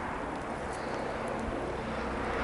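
Steady, even wind noise with no distinct events.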